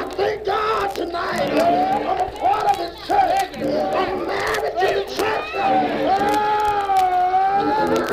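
Church congregation shouting and crying out in praise, many voices overlapping. One long, wavering cry is held near the end.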